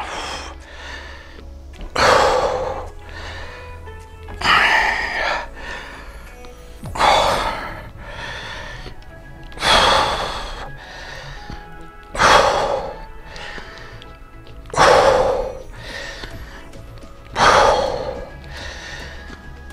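A man's forceful breaths, one with each rep of dumbbell skull crushers, seven in all, about every two and a half seconds, over steady background music.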